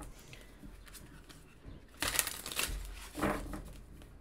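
A deck of tarot cards shuffled by hand, the cards rubbing and flicking against each other, with a louder burst of shuffling about two seconds in.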